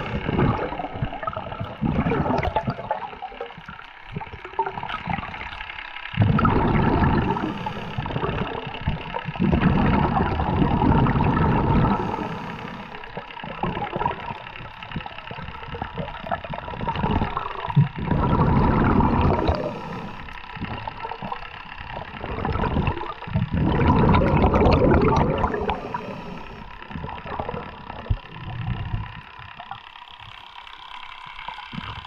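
Underwater water noise on a speargun-mounted camera, a steady rushing hiss that swells into louder surges of a second or two every few seconds as the diver swims.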